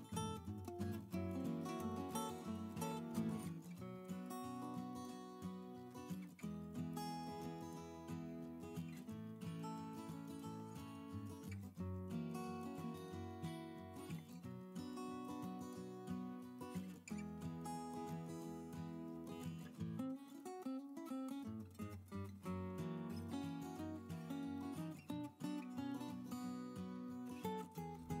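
Background music led by strummed acoustic guitar, with a steady beat.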